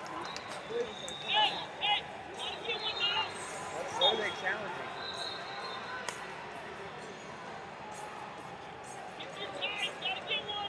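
Rubber-soled wrestling shoes squeaking briefly on the mat, a few times in the first three seconds and again near the end, over steady chatter from voices in a large arena.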